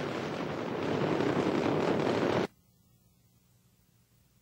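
Space Shuttle Discovery's ascent roar from its solid rocket boosters and three main engines: a dense, crackling rushing noise that cuts off suddenly about two and a half seconds in.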